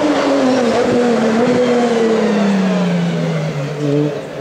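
Race car engine, not yet in sight, coming toward a hillclimb bend, its note falling steadily in pitch as the revs drop, with a short dip in loudness near the end.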